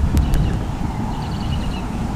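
Wind buffeting the microphone as a steady low rumble, with two sharp clicks near the start and a short run of rapid high-pitched bird notes about a second in.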